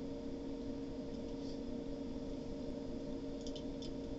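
Quiet room tone with a steady low electrical hum, and a few faint clicks, about a second and a half in and again near the end, as small objects are handled.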